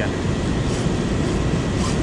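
Steady rush of river water pouring over a low-head dam spillway.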